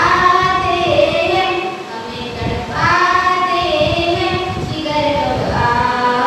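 A girl singing a Hindi patriotic song solo into a handheld microphone, in long held notes that glide and waver, in phrases of a few seconds each.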